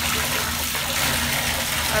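Bathtub faucet running, water pouring in a steady rush into a filling tub.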